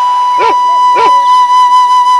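Folk song music: a flute holds one long steady note, with two sharp beats about half a second and a second in.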